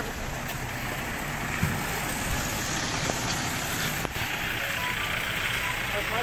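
A convoy of cars and SUVs driving past close by: a steady rush of engine and tyre noise.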